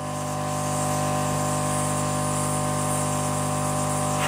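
Hot-air soldering station blowing steadily: a constant hiss of air from the nozzle over the steady hum of its blower, as it heats a replacement CPU socket pin to reflow the solder that holds it.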